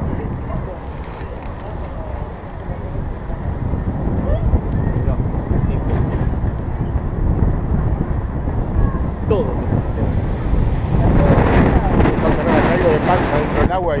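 Wind buffeting the microphone of a head-mounted action camera: a steady low rumble. Indistinct voices nearby grow louder over the last few seconds.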